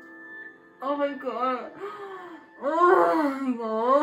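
A woman's high, wavering whines and wails of excitement in two bouts, the second longer and louder, partly muffled behind her hands, over soft sustained background music.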